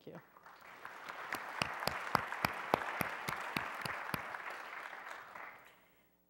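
Audience applauding in a hall to welcome a panelist: the clapping swells in about half a second in, holds steady, then dies away near the end.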